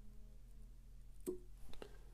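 Fly-tying scissors snipping the white poly-yarn parachute post of a foam hopper fly: a few faint short clicks in the second half, one about a second in and two close together near the end, over a low steady hum.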